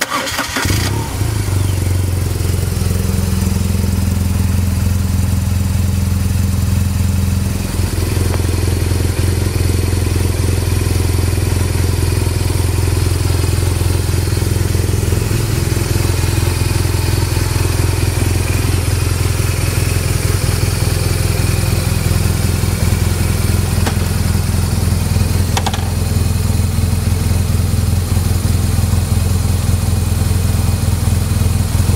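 Motorcycle engine starting right at the beginning, then idling steadily.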